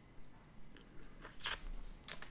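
A stiff oracle card rustling and scraping as it is handled and lowered toward the table: a few short crisp strokes, the loudest about a second and a half in.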